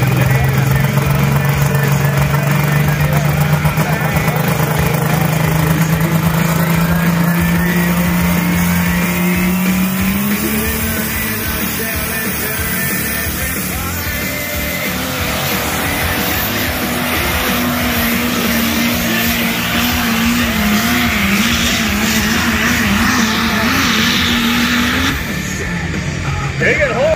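Diesel pulling pickup's engine at full throttle, hauling the sled down the track: its note climbs steadily for about ten seconds, then holds high and wavers. It cuts off abruptly near the end.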